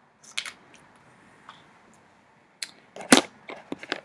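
Small plastic clicks and taps from handling a mascara tube, wand and compact mirror, with a sharper snap about three seconds in followed by a few quicker clicks.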